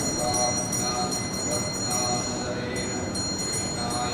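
Voices chanting together in a large hall, the chant coming in short held notes, over a steady high-pitched whine.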